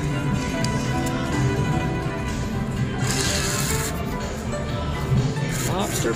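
Casino slot machines playing electronic tunes and chimes. A brief hiss comes about halfway through, and a sweeping tone near the end.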